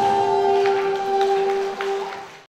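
The last held note of an Andean folk band's song: one steady sustained tone, most likely a wind instrument, with a few light taps over it, fading out near the end.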